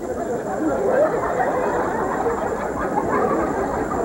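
Comedy-club audience laughing, a steady crowd laugh that holds at an even level for several seconds.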